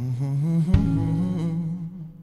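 Live band playing a slow indie R&B song: held keyboard chords under a wordless hummed vocal line that slides between notes, with a single kick drum beat about a second in.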